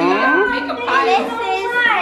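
Children's excited, high-pitched voices: drawn-out cries that glide up and down in pitch, with several voices overlapping as a gift is opened.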